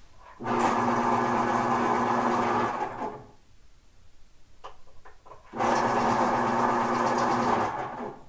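Two steady, machine-like buzzes, each about two and a half seconds long, the second starting about two and a half seconds after the first ends.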